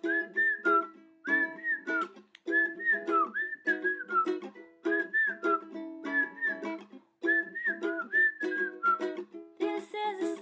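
A person whistling a melody in short phrases, each dipping in pitch at its end, over a ukulele strummed in a steady rhythm.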